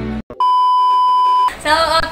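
A single steady, high-pitched beep tone lasting about a second, an edited-in bleep sound effect, starting just after the background music cuts off.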